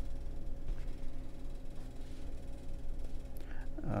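Room tone: a steady low hum, with a faint click near the end.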